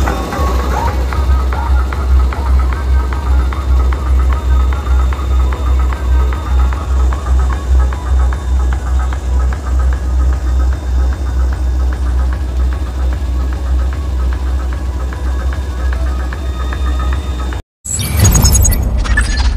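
Dance music played very loud through a large outdoor horn-speaker and bass-box sound system, driven by a heavy pulsing bass beat. It cuts off suddenly near the end.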